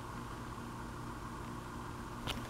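Steady low hum with a hiss over it: background room tone with no distinct events.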